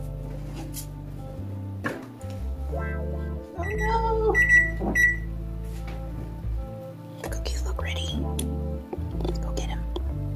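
Background music with a steady bass line throughout; a knock near two seconds in as the oven door shuts, then a few short high electronic beeps from the oven's control panel being set, about four to five seconds in.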